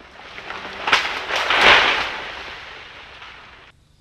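Crash of a bromeliad plant falling through the forest: a sharp snap about a second in, then a rustling, crackling swell that peaks and dies away, cut off abruptly just before the end. The fall destroys the crab's bromeliad home.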